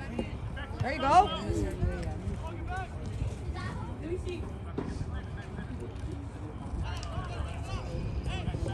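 Shouts and calls from players and spectators at an outdoor soccer game, scattered and overlapping, with one loud call about a second in.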